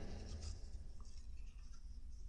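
A quiet pause between speech: faint room tone with a steady low hum and light scattered rustling, and a small tick about halfway through.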